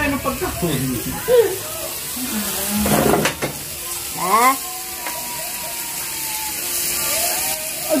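People's voices, with a rising vocal call about four seconds in, over the faint steady sizzle of pork grilling at the table.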